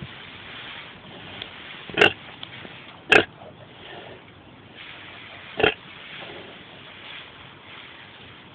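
Pig calls from a sow and her newborn piglets: three short, sharp sounds about two, three and five and a half seconds in, over quiet background.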